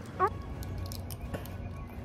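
A brief vocal sound just after the start, then a few faint clicks of a balut's shell being picked open with the fingers, over steady background music.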